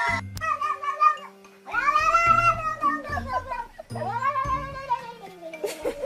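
A domestic cat giving two long, drawn-out yowling calls, each rising and then falling in pitch, over background music.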